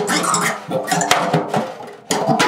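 A thin rod scraped, pressed and rattled against a drumhead, giving an irregular clatter of scrapes and clicks with some held pitched squeals from the head. It fades away just before the end.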